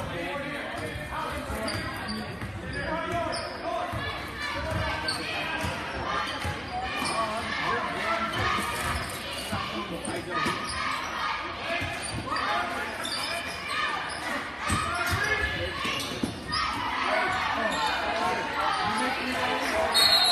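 Basketball being dribbled on a hardwood gym court, short sharp bounces over steady crowd chatter and shouts that echo in a large gymnasium.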